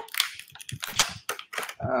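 Clear plastic toy packaging crinkling and crackling in the hands, a rapid run of sharp crackles, as a tightly packed small figure is pulled out of it. A man's voice says 'Ah' near the end.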